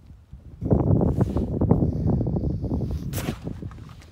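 Snow crunching and scuffing with the rustle of a puffy jacket, a dense run of rapid crackles that starts about half a second in and goes on for about three seconds, with a brief hiss near the end: someone stumbling and falling down a snowy slope.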